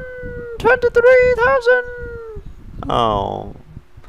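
A high-pitched, sing-song cartoon character voice speaking in short slurred phrases, followed about three seconds in by a brief falling pitched glide.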